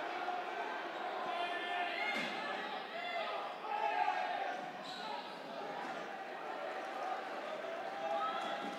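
Dodgeball play in a large gym hall: players' voices calling out across the court, echoing, with rubber dodgeballs bouncing on the court floor.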